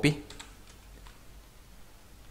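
A few faint computer keyboard and mouse clicks, mostly in the first second.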